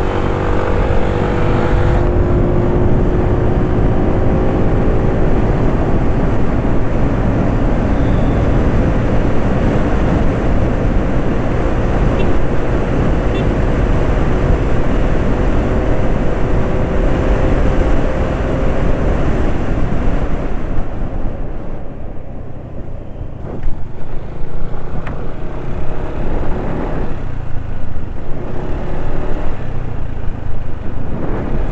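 Yamaha automatic scooter running under way, its engine whine rising slowly over the first two-thirds as it gathers speed. From about two-thirds in, wind buffets the microphone in uneven gusts over the engine and road noise.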